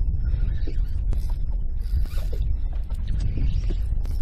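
Fishing reel working a hooked fish: irregular mechanical clicking and ticking from the reel, over a steady low rumble of wind on the microphone.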